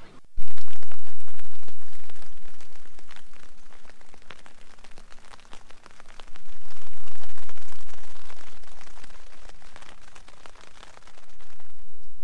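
Rain pattering on a tent's fabric as dense fine drops. Over it come two loud surges, one about half a second in and one about six seconds in, each starting suddenly and fading away over several seconds.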